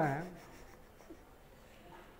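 A voice finishes a word in the first moment, then near silence: faint room tone.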